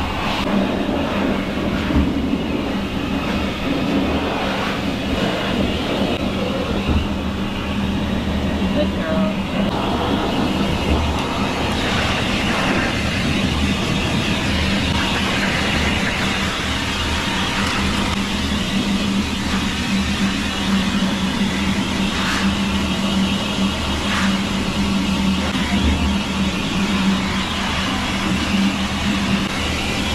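A high-velocity pet dryer blowing air through its ribbed hose onto a wet toy poodle's coat, running steadily with a constant low hum.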